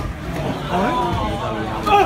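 People's voices calling out around a boxing ring, with one sharp gloved-punch smack near the end as the boxers clinch in the corner.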